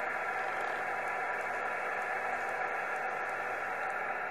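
Yaesu FT-857D transceiver on 70 MHz upper sideband, receiving an empty channel: a steady hiss of band static from its speaker, narrowed to the sideband filter's voice range.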